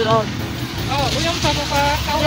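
Snatches of a woman's voice over a steady low rumble of road traffic.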